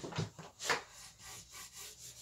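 Soft pastel stick drawn on its side across textured pastel paper: a series of short, uneven rubbing strokes laying down broad, light colour.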